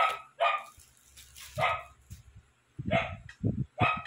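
A dog barking about four times in short, separate barks, with a few low knocks near the end.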